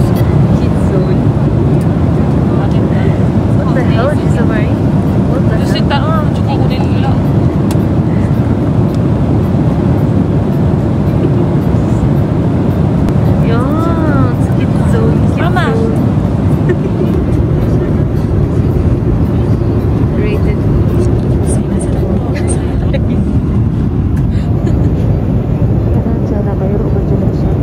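Steady, loud low roar of a jet airliner's cabin noise, with passengers' voices faintly over it.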